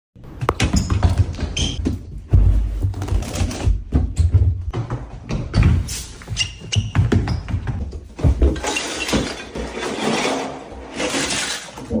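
A rapid, edited run of thuds and crashes with a stretch of whooshing noise near the end, over a heavy low bass.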